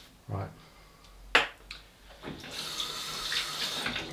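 A sharp click, then water running from a tap for the last second and a half.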